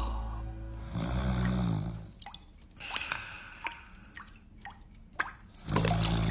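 Cartoon sound effects: a short low hummed grunt from the wordless character, then a scattering of short dripping plinks and clicks, and another short grunt near the end.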